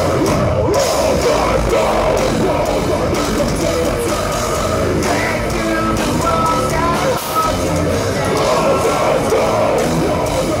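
Live metalcore band playing loud distorted guitars, bass and drums, with the vocalist yelling over them. The music briefly drops out for a moment about seven seconds in.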